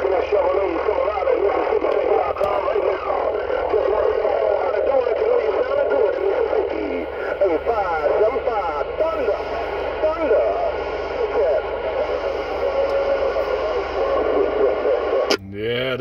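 AM CB radio receiving distant stations on skip: men's voices coming in garbled and overlapping over hiss, thin and band-limited, with a steady whistle late on.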